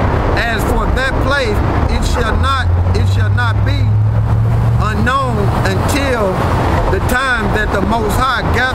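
A man's voice talking loudly throughout, and beneath it the low engine hum of a passing truck from about two and a half to five seconds in.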